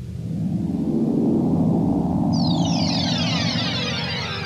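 A rumbling whoosh sound effect that swells in over the first second and holds, with a cascade of falling high-pitched sweeps joining about halfway through.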